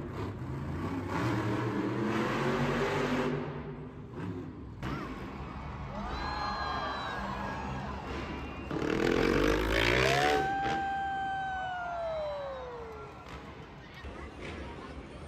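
Monster truck engines running in an arena, with a rev that climbs about nine seconds in and then winds down in a long falling whine.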